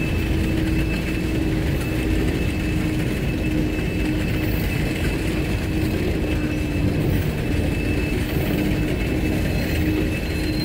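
Railroad tank cars of a long freight train rolling slowly past, their steel wheels running on the rails with a steady rumble, a low hum and a faint high whine.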